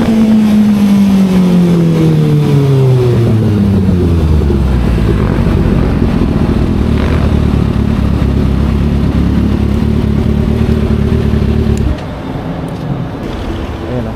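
Sport motorcycle engine slowing down: its note falls steadily over the first four seconds or so as the bike decelerates, then runs low and steady at low speed. It is switched off about twelve seconds in.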